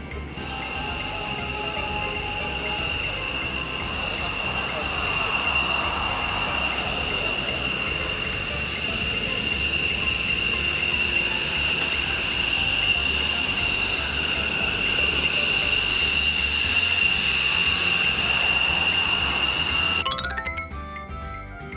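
Twin turbofan engines of a JASDF F-15DJ Eagle taxiing just after landing. It is a steady high-pitched jet whine with two piercing tones over a rushing roar, growing gradually louder as the jet comes closer.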